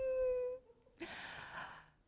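A woman's voice: a short, steady high-pitched vocal sound lasting about half a second, then, about a second in, a breathy exhale like a sigh or a silent laugh.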